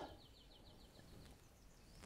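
Near silence with a faint, high, rapid bird trill of about ten short notes a second, slightly falling in pitch and stopping a little over a second in.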